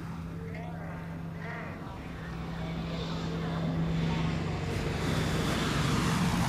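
Electronic intro: a held low synth tone that swells steadily louder, with bending, voice-like sweeps over it near the start.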